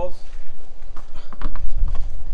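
A few short rustles and soft knocks as a mesh bag of tennis balls is handled, over a steady low rumble.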